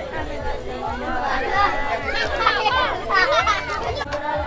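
Several people talking at once, overlapping chatter of voices, busiest in the second half.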